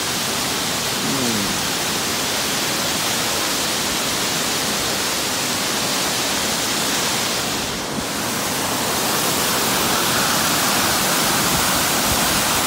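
Mountain waterfall rushing steadily, a dense, even hiss of falling water. About eight seconds in it dips briefly, then comes back slightly louder and brighter.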